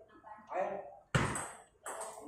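Table tennis ball struck by a paddle and bouncing on the table as a rally starts: a sharp click about a second in and another near the end, with voices in the background.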